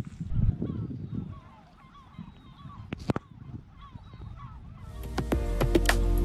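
Faint birds calling with short honking calls, repeated many times over a few seconds, over a low rumble of wind at first. Music fades in near the end and becomes the loudest sound.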